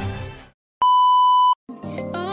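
Music fades out, then a single steady high electronic beep sounds for about three-quarters of a second, cut off cleanly. After a brief silence, new music starts near the end.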